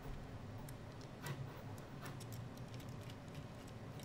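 Faint, scattered clicks and light taps of small plastic and metal parts as a 3D printer hotend assembly is handled and pushed into its housing, over a low steady hum.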